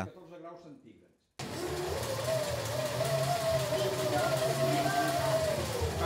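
Pedal-driven bicycle dynamo rig feeding a radio receiver: a steady whirring hiss with a whine whose pitch climbs and later sags as the pedalling speed changes. It starts abruptly about a second and a half in.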